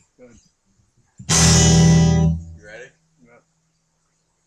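A guitar chord strummed once, loud, about a second in. It rings out for about a second, and one low note goes on sounding faintly afterwards.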